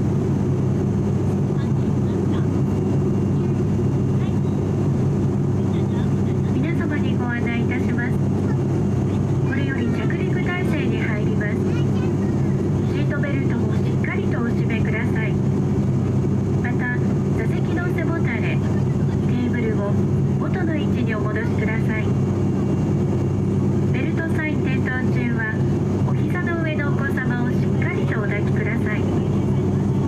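Steady low drone of an ATR 42-600's turboprop engines and propellers, heard inside the passenger cabin in flight. From about seven seconds in, a cabin crew announcement plays over the PA on top of the drone.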